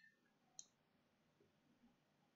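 Near silence: room tone, with one faint, short click a little over half a second in.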